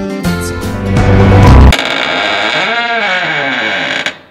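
Background music that builds in loudness, then changes abruptly under two seconds in to a steady, sustained passage with sweeping pitch.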